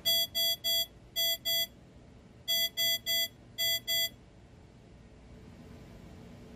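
Primary alarm speaker of a microcontroller-based medical alarm board (MSPM0G1507 with TPA6211A1 amplifier) sounding the IEC 60601-1-8 high-priority alarm. It plays ten short beeps of one bright, buzzy pitch, grouped three then two, a short pause, then three then two again.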